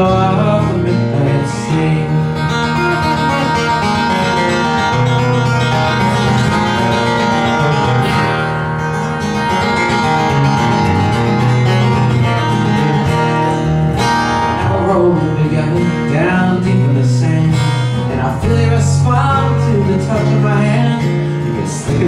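Acoustic guitar playing an instrumental break in a song, with steady bass notes under changing chords.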